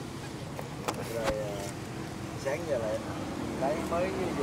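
Faint, scattered voices over a steady low hum of road traffic, with a couple of light knocks about a second in.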